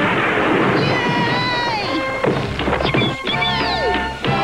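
Cartoon cannon-shot crash sound effect dying away in the first second, followed by background music with sliding, whistle-like notes, one of them falling near the end.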